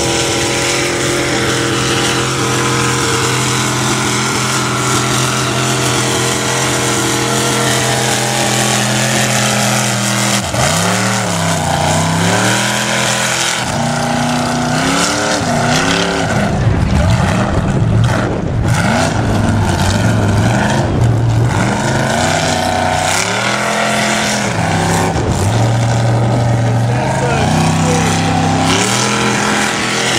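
Mud truck's engine labouring through a deep mud pit while dragging a tire: a steady drone for about the first ten seconds, then revving up and down again and again.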